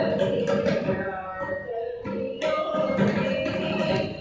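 Carnatic music in raga Nadhavinodhini: a female voice and violin carry a gliding, ornamented melody over mridangam drum strokes. The sound eases off briefly about two seconds in.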